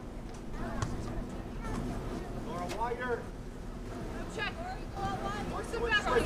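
Several short calls from distant voices across an open field, heard over a steady low outdoor background rumble.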